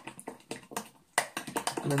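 Light, quick clicking and tapping of a utensil against a glass mixing bowl as oats are stirred together, for about the first second, followed by a man's voice.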